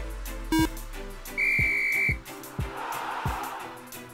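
Electronic countdown beeps, one right at the start and another about half a second later, then a long high whistle tone lasting under a second. After that comes music with a steady beat, and a whooshing swell near the end.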